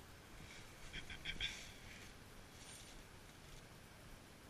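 Quiet outdoor background, with a short flurry of light rustles and clicks about a second in.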